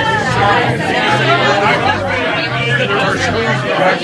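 Loud chatter of several people talking over one another in a packed room.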